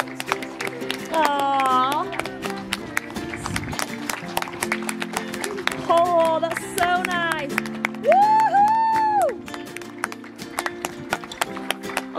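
Steady hand clapping, a rapid run of sharp claps from several people, with voices whooping now and then. Background music with steady low notes runs underneath.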